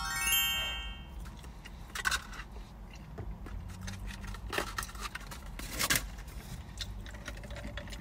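A bright twinkling chime sound effect, a quick cluster of high ringing tones lasting about a second, accompanying the sparkle graphic. After it come a few faint, brief handling noises.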